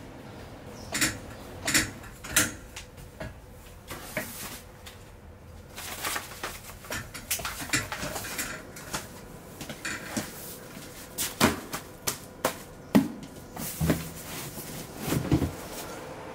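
Paper files, boxes and folders handled on metal storeroom shelving: irregular knocks, clicks and paper rustling, with heavier thumps in the second half, over a faint steady hum.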